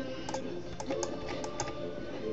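Faint computer keyboard and mouse clicks, a few scattered taps, over quiet background music.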